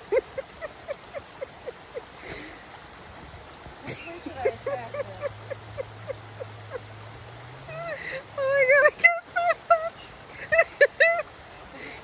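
Short repeated bursts of nervous laughter, a few per second, growing louder in the last few seconds, over the steady rushing of a shallow spring-fed creek.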